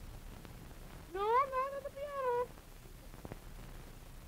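A puppeteer's high, whining non-word voice for a small puppet character: a cry about a second in that rises in pitch, wavers, breaks briefly, then trails off.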